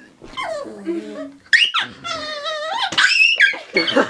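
A small dog growling and crying out in a string of high-pitched, wavering yelps, one held for almost two seconds in the middle: the dog is upset and angry at a water bottle it takes as a threat.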